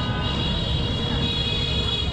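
Steady low rumble of road traffic, with a high-pitched steady tone held over it that fades near the end.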